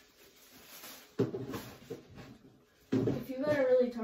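A young woman speaking; her speech starts near the end, after a short, sudden sound about a second in.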